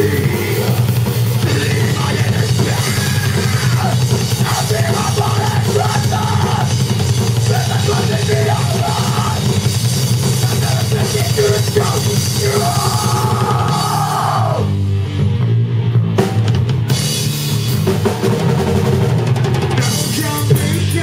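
A rock band playing live and loud, with drum kit, electric guitar and bass, recorded on a camera's microphone with a dirty, overloaded sound. About fifteen seconds in, the cymbals and guitars drop out briefly, leaving only the low end, then the full band comes back in.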